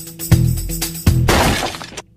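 Outro music with a heavy beat about once a second, ending on a loud crash in the last second before the music stops abruptly.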